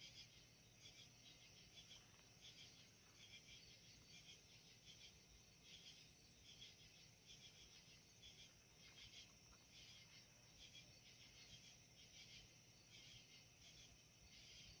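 Near silence, with faint crickets chirping in a steady pulsing chorus.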